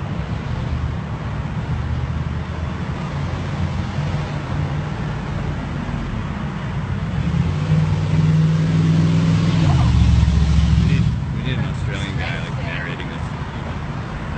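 Low running of a road vehicle's engine: steady humming tones that grow louder about eight seconds in, drop in pitch around ten seconds, then fade back.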